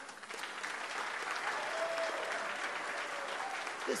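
Crowd applauding, swelling within the first half second and then holding steady.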